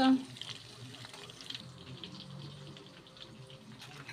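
Zucchini-and-minced-meat cutlets frying in vegetable oil in a pan: a faint, steady sizzle.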